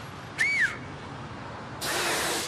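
A short two-finger whistle about half a second in, its pitch rising and then falling. Near the end comes a loud breathy rush of air with no clear tone: a failed attempt at the same finger whistle.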